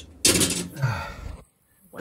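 A man's sigh: a loud breathy exhale whose voice drops in pitch, after which the sound cuts off to silence.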